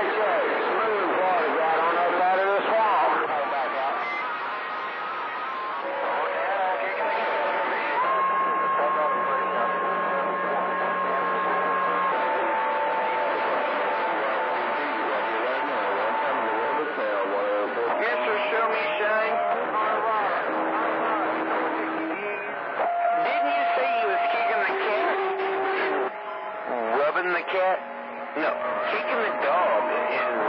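Citizens Band radio receiving skip on channel 28, heard through the radio's speaker: distant voices, warbling and too garbled to make out, with steady whistles at different pitches that switch every few seconds as stations key up and drop out.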